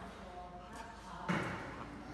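Faint background voices, with one short, sudden louder sound a little past halfway through.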